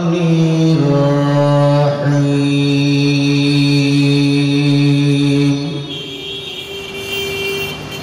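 A man chanting in long, held melodic notes, in the drawn-out recitation style of a Bangla waz preacher; one note is held for about five seconds, then the voice goes softer and higher toward the end.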